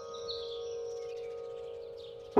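A held piano chord slowly dying away, with small birds chirping over it: a few short high chirps about a third of a second in, and fainter ones later.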